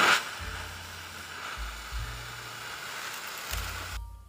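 Acetylene flame jetting from the tip of a fine infusion needle, fed by gas from calcium carbide reacting with water in a bottle; a steady hiss. Background music with low bass notes plays underneath.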